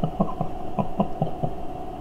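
A man chuckling quietly, a string of about six short pulses in the first second and a half, over a steady electrical hum.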